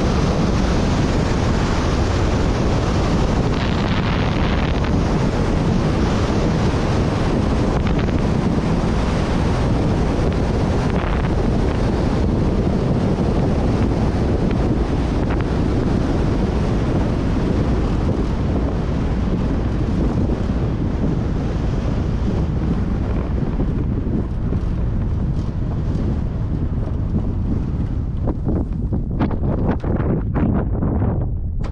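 Steady rush of airflow and wind on the microphone of a glider's onboard camera as it lands and rolls out on a grass field. The hiss thins over the last several seconds as the glider slows, with a few knocks near the end.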